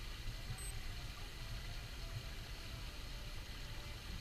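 Steady outdoor ambience by a swimming pool: a low, unsteady rumble with a faint, even hiss of water.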